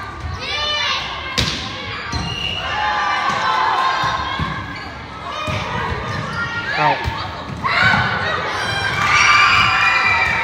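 Volleyball rally in an echoing gym: the ball is struck with a few sharp smacks, the clearest about a second in and again around seven seconds. Players and spectators call and shout over it, loudest near the end.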